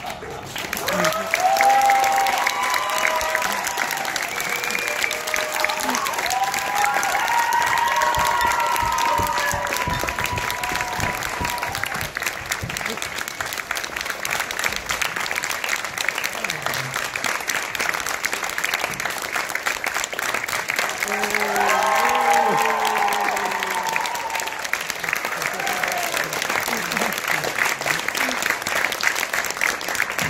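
Audience applauding steadily, with cheers and whoops rising above the clapping a second or two in, around seven to ten seconds, and again around twenty-two seconds.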